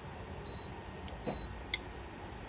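Control panel of a VM B1390 smokeless rotating electric grill giving two short, high beeps less than a second apart, as its buttons are pressed to raise the temperature. A couple of faint clicks come between and after the beeps.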